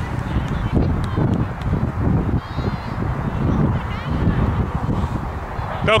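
Outdoor sideline ambience: wind buffeting the microphone as a steady low rumble, with faint far-off high calls now and then. A loud shout begins at the very end.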